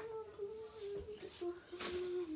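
A woman humming one low, held tune that steps slowly down in pitch, with a sharp click near the end.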